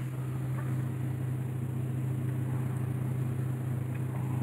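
A steady low hum with no other sound of note: the room's constant background drone.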